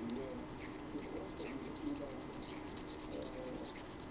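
Toothbrush bristles scrubbing a Maine Coon cat's teeth, a run of quick, irregular scratchy clicks.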